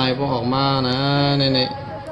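A man's voice holding one long syllable at a nearly level pitch for about a second and a half, drawn out like a chant.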